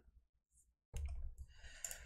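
Near silence, then faint room noise and a soft computer mouse click near the end.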